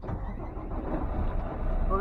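Low, steady rumble of a semi-truck's diesel engine running, with a woman's voice starting near the end.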